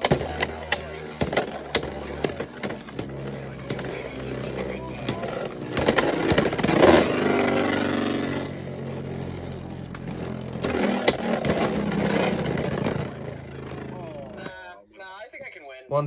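Two Beyblade X tops spinning and clashing in a plastic stadium: a steady whir broken by repeated sharp clicks as they strike each other and the stadium wall. The spinning sound dies away near the end.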